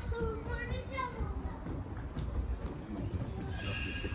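A person's voice, high and wavering in about the first second, over a steady low rumble.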